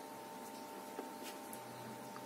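Quiet room tone with a faint steady hum, and a soft tick about a second in from hands handling a plastic glue bottle and a quilled paper piece.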